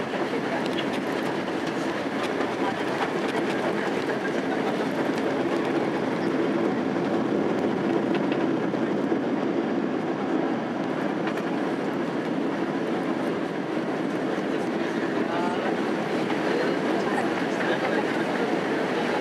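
Inside the cabin of a Boeing 767-300 rolling out on the runway after landing: a steady rumble of the engines and the wheels on the runway.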